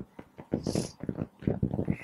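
A man coughing and clearing his throat in rough bursts, about half a second in and again about a second later.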